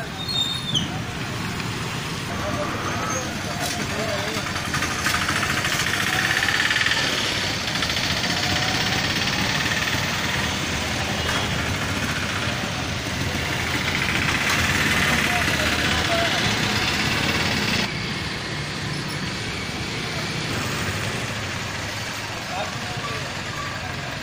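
Street traffic noise with motorcycle and scooter engines running and passing, and people talking in the background. The noise swells twice and changes abruptly about eighteen seconds in.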